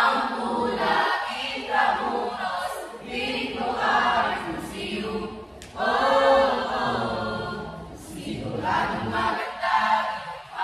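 A group of voices singing together a cappella, in phrases of a few seconds broken by short pauses.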